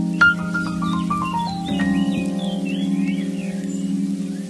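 Background music: sustained chords under a quick run of short notes stepping down in pitch near the start, with a chord change a little under two seconds in.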